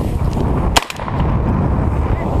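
A single shotgun shot, one sharp crack about three-quarters of a second in, over heavy wind buffeting the microphone.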